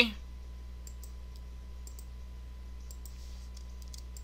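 Faint, scattered clicks of a computer mouse and keyboard while drawing with the pen tool in Adobe Illustrator, about a dozen over a few seconds, some in quick pairs, over a steady low electrical hum.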